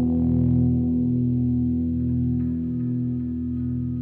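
Song outro without singing: a guitar with effects holds a sustained chord that rings on and slowly fades.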